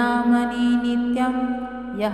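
A Sanskrit devotional stotra chanted on long held notes, the pitch shifting about a second in.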